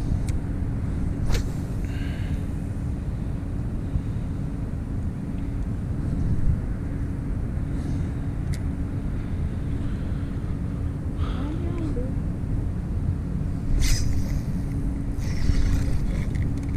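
Boat motor running steadily with a low rumble and a constant hum. A few sharp clicks and knocks sound over it.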